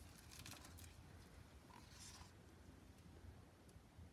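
Near silence: a faint low room hum with a few soft clicks and rustles of handling in the first second and a brief faint hiss about two seconds in.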